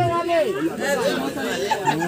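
Several people talking at once in overlapping chatter.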